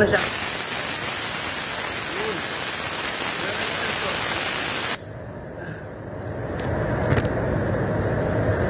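Compressed air hissing out of a SATA RP spray gun held open, a steady whistling hiss that cuts off abruptly about five seconds in, leaving a lower steady background noise.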